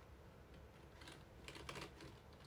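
Near silence with a few faint light typing clicks, a small cluster of them about a second and a half in.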